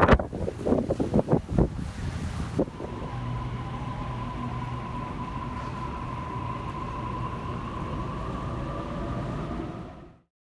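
Gusty wind buffeting a phone's microphone for the first couple of seconds. After an abrupt change, a steady low hum with a faint held high tone takes over and cuts off suddenly at the end.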